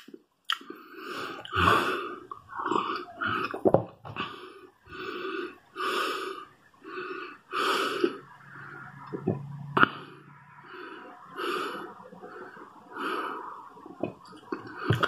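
A person's breathing and mouth sounds while tasting a fizzy soda: short breaths about once a second, with a few sharp lip-smacking clicks.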